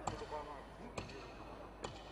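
Three short, sharp knocks roughly a second apart, over faint voices.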